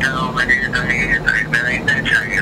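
A man's voice coming tinny and thin through a cell phone's loudspeaker during a call.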